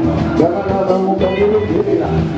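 A live band playing Zimbabwean chimurenga music: electric bass, drums and congas under a steady high tick about four times a second, with voices singing over it.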